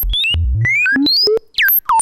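Modular synthesizer oscillator jumping between random pitches several times a second, its pitch driven by a Wogglebug's random voltage patched into the volt-per-octave input. Many of the notes are very high, and a few bend downward near the end.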